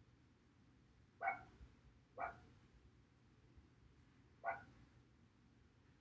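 An animal calling three times, faint: short pitched yelps about a second in, a second later, and once more two seconds after that.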